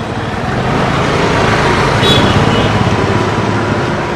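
Motorcycle and scooter engines running past on a street, the sound swelling as one goes by about two seconds in.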